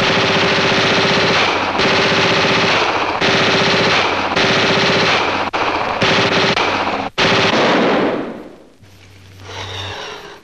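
Thompson submachine gun firing long rapid bursts, broken by short gaps, and dying away about eight seconds in.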